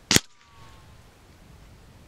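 A single sharp shot from a Theoben Rapid .25 pre-charged pneumatic air rifle just after the start, followed by a faint, slightly falling tone that fades within about a second.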